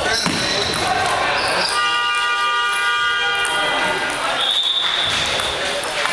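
Table tennis ball clicking off bats and the table during a rally, against a background of voices. In the middle a steady, horn-like pitched tone holds for about two seconds, and a thin high tone follows near the end.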